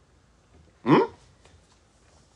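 A man's single short throat sound about a second in, quick and rising in pitch, like a hiccup.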